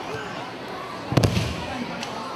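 A judoka thrown onto the judo mat: one sharp slap with a heavy thud a little past a second in, the body and breakfall landing.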